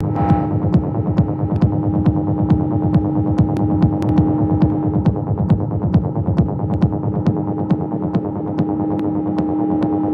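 Live electronic music from a Cre8audio West Pest and Behringer TD-3: a rumbling kick-drum pattern under a steady droning tone, with sharp ticks keeping time.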